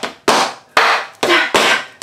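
Metal taps on tap shoes striking a hard floor in a slow, uneven run of about five sharp taps, with a voice singing "da, da" along with the rhythm.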